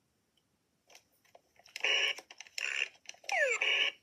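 Electronic sound effects from an original Bop It toy, played back through a tablet's speaker: a few clicks, short noisy bursts, and a falling whistle-like glide near the end.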